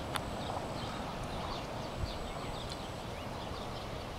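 Outdoor ambience: a steady low rumble with many faint, quick high-pitched chirps over it, and a couple of brief sharp clicks.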